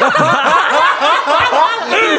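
Several men laughing loudly together, their laughter overlapping. It breaks out suddenly at the start.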